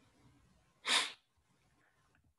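A single short, sharp burst of breath noise from the person at the microphone about a second in, like a sniff or stifled sneeze, lasting about a third of a second.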